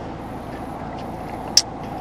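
Steady low hum of a stationary car's cabin with the car running, and one short click about one and a half seconds in.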